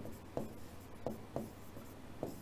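A pen writing on an interactive whiteboard: light scratching broken by a few short, sharp taps as the strokes land on the board.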